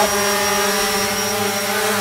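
DJI Phantom quadcopter hovering, its four motors and propellers giving a steady hum of several held pitched tones with a thin high whine on top.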